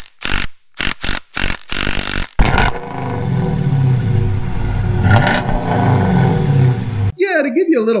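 Logo sting sound effects: a quick run of sharp hits over the first couple of seconds, then an engine revving for about four seconds that cuts off suddenly.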